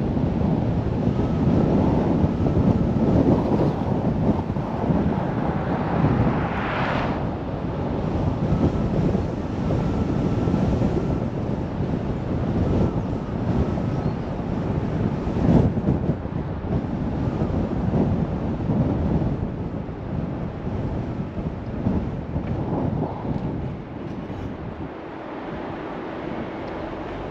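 Steady rush of wind buffeting the microphone over the rumble of a car driving along a road. A brief whoosh rises in pitch about seven seconds in, and there is a sharp thump a little past halfway.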